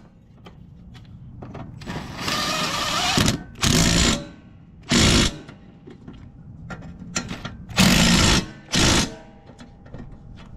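Milwaukee M18 cordless impact driver hammering a mower blade bolt tight in about five bursts: the first and longest about two seconds in, then shorter bursts near four, five, eight and nine seconds. Small clicks fall between the bursts.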